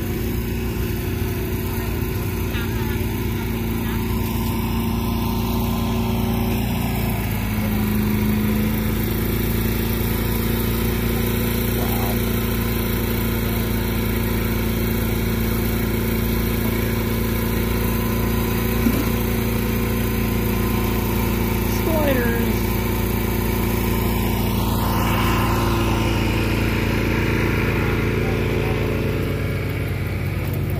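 Steady hum of a generator engine, such as food trucks run, holding one even speed throughout, with indistinct crowd chatter over it.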